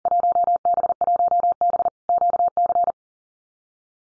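Computer-generated Morse code at 40 words per minute, a single steady-pitched tone keyed in rapid dots and dashes, sending the Field Day exchange '1B Quebec' a second time. It stops about three-quarters of the way through.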